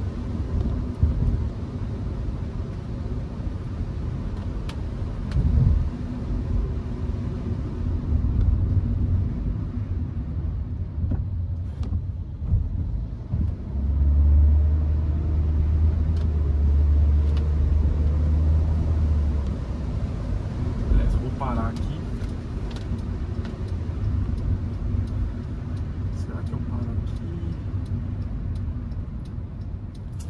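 Cabin sound of a Hyundai HB20 with the 1.6 four-cylinder engine and four-speed automatic, driving on city streets: a steady engine and road rumble. A heavier low drone comes in for about five seconds around the middle.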